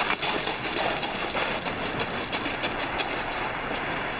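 Sea surf washing over a pebble beach, with the crunch of footsteps on the loose stones: a steady rattling hiss dotted with many small clicks.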